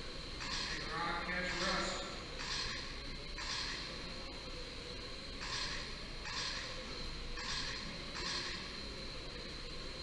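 Electric 1/10-scale RC oval cars with 21.5-turn brushless motors running laps on a carpet track, a whirring hiss rising and falling each time a car passes, about once a second. A steady high whine runs underneath.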